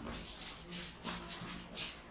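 Shuffling footsteps of a group of children walking on a hard floor: a run of soft, repeated scuffs, two or three a second.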